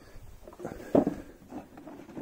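Cardboard box of a Corgi diecast model aircraft being handled, with scattered light knocks and rustling and one sharp knock about a second in.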